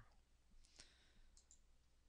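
Near silence with a few faint computer mouse clicks, spread between about half a second and a second and a half in.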